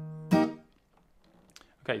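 Acoustic guitar capoed at the first fret playing a D chord: the bass note rings, then about a third of a second in the three highest strings are struck once and quickly palm-muted, so the chord cuts short.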